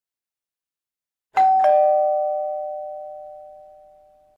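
Two-note ding-dong chime sound effect for the ringing notification bell. A higher note sounds about a second and a half in, a lower one follows a moment later, and both ring out and slowly fade.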